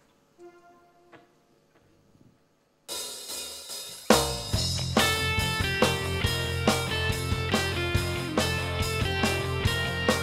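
A rock band starts playing live: after a near-silent start, a cymbal-led intro comes in suddenly about three seconds in, and a second later the full band (drum kit, bass and electric guitars) comes in on a loud hit and plays on at a steady beat.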